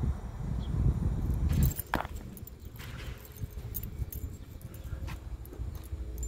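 Handling and walking noise on a phone microphone: a low rumble in the first second and a half, one sharp click about two seconds in, then scattered light clicks.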